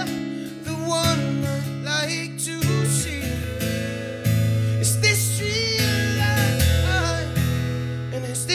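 Live pop band playing a song: strummed acoustic guitar with bass and drums, the bass notes changing a few seconds in, and a voice singing over it.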